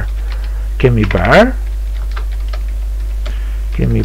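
Typing on a computer keyboard: a run of light, quick keystrokes as a line of text is entered, over a steady low hum.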